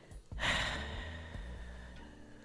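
A person sighing: one long breath out that starts about half a second in and fades away over about a second.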